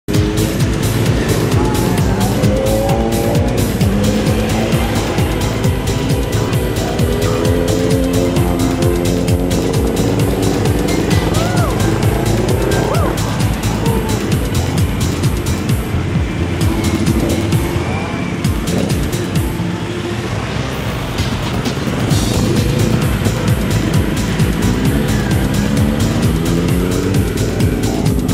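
Several motorcycle engines revving up and down as a group of bikes pulls away, mixed with background music that has a steady beat.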